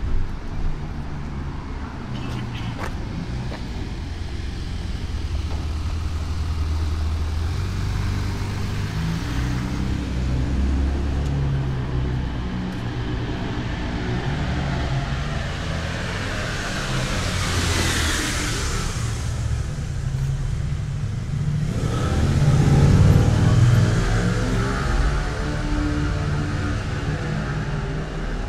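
Road traffic in a city street: motor vehicles running and passing by over a steady low rumble. One vehicle swells and fades past a little after halfway, and a louder engine passes soon after.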